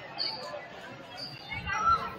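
Voices of players and spectators talking in a gymnasium, with a few brief high squeaks of sneakers on the hardwood court; the voices get louder near the end.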